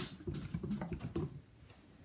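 Steam iron pushed over folded fabric on an ironing board: faint rustling with light ticks, stopping about one and a half seconds in.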